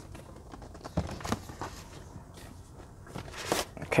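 Cardboard box being handled and slid out of its outer cardboard sleeve: low rustling with a few brief scrapes and knocks, two about a second in and two more past the three-second mark.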